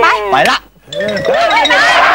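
A man's excited exclamation, then several voices at once.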